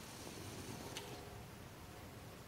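Quiet room hiss with a single faint click about a second in.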